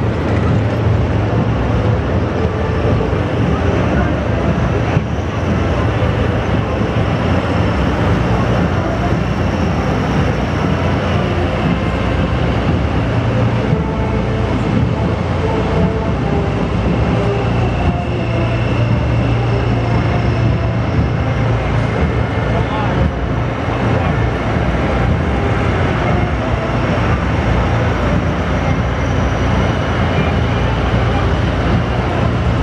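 Heavy missile-launcher transport vehicles driving past: a steady, loud, low engine rumble that runs without a break.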